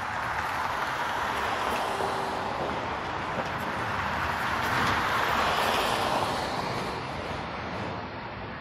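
Steady rushing vehicle noise, like passing traffic, that swells to its loudest a little past the middle and eases off near the end.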